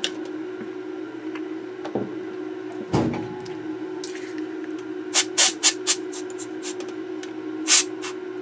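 Tools being handled on a workbench: a single knock about three seconds in, a quick run of four or five sharp clicks around five to six seconds, and one more click near the end, over a steady low hum.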